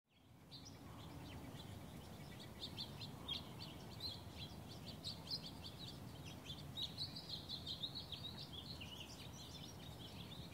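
Faint chorus of small birds chirping and twittering in quick, overlapping short calls, over a low background rumble of outdoor ambience; it fades in within the first half second.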